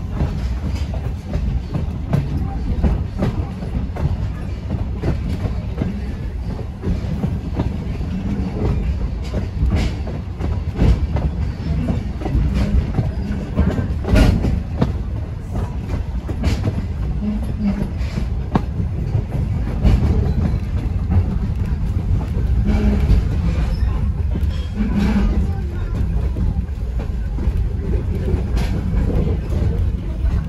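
Passenger train coach rolling along the track, heard from inside the car: a steady low rumble with irregular clicks and knocks from the wheels on the rails.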